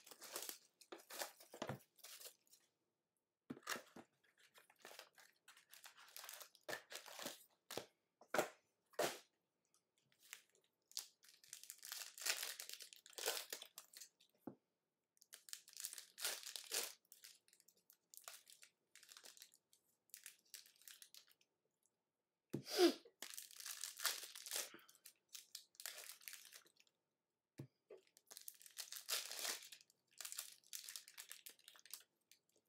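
Plastic wrapping and foil trading-card packs crinkling and tearing as a box of cards is unwrapped and its packs are opened, in irregular bursts with short pauses.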